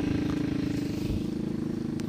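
An engine running steadily, a constant low drone with an even pitch.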